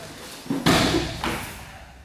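A heavy thud of a body thrown down onto a padded gym mat about half a second in, fading out over the next second.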